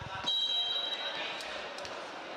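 A referee's whistle blown once about a quarter second in, a steady high note held for about a second, after a couple of thumps like a ball bouncing on the court.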